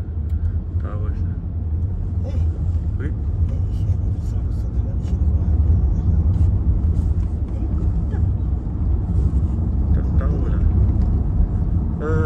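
Steady low rumble of road and engine noise inside the cabin of a moving Toyota sedan.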